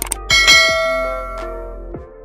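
Notification-bell 'ding' sound effect of a subscribe-button animation. A couple of quick clicks are followed about a third of a second in by one bright chime that rings and fades over about a second and a half, over background music.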